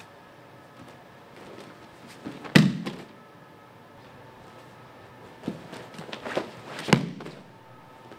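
A few dull thuds from karate partners drilling techniques: one loud thud about two and a half seconds in, then a run of lighter knocks and a second thud a few seconds later.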